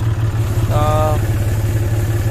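A John Deere tractor's diesel engine running steadily while the tractor is driven, an even, rapid engine pulse with a deep hum.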